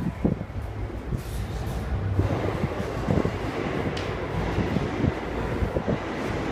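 Steady low rumble in a subway pedestrian tunnel, growing fuller about two seconds in, with scattered short knocks.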